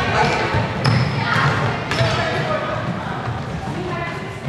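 Basketball bouncing on a wooden sports-hall floor, two sharp bounces about a second apart, echoing in the large hall, with players' voices calling.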